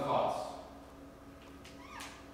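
A short, drawn-out vocal sound from a person in the first half-second, fading out, then quiet room tone with a faint steady hum.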